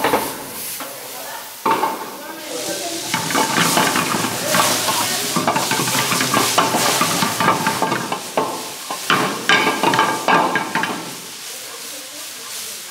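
Onions, peppers and tomatoes sizzling and frying in a pan over a high flame. About two seconds in, the sizzling suddenly gets louder as liquid is ladled into the hot pan. Short clacks come from the utensil stirring in the pan.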